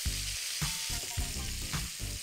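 Cauliflower florets frying in hot oil with a steady sizzle, while a spoon stirs them and knocks against the pan about twice a second.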